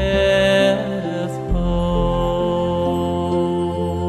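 Large choir singing a slow, hymn-like Buddhist devotional song over instrumental accompaniment, with long-held notes and the bass shifting about a second and a half in.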